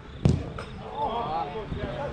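A single hard thud of a football being struck, about a quarter of a second in, followed by players shouting in the distance.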